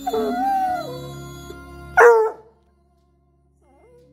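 Basset hound giving one loud bark about two seconds in, over background music.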